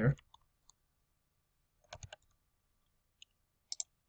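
A few sparse, sharp clicks of a computer keyboard and mouse: three in quick succession about two seconds in, a single one a little later and a pair near the end, with near silence between them.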